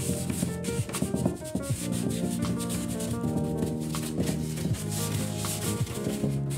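Paintbrush rubbing and dabbing thinned, watery acrylic paint onto the painting surface close to the microphone, in quick scratchy strokes, over background music.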